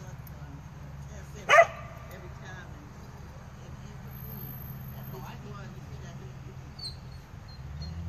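A dog gives one short, sharp bark about a second and a half in, over a steady low background hum.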